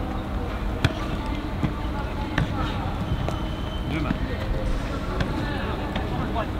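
Football being struck and caught in a goalkeeper drill: a handful of sharp ball thuds, the loudest about a second in, over steady open-air background noise.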